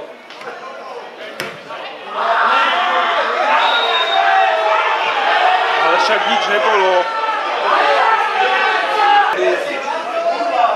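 Spectators' chatter: several voices talking over one another close by, louder from about two seconds in, with a single sharp knock shortly before that.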